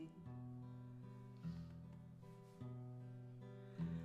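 Acoustic guitar played softly on its own, with a new chord struck about every second and ringing on.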